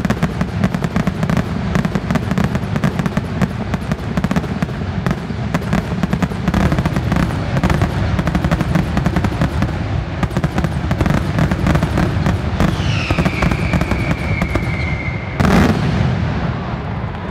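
Fireworks finale: a dense, continuous barrage of bangs and crackles from many shells firing in rapid succession. Near the end a high whistle falls in pitch and holds, then one loud bang.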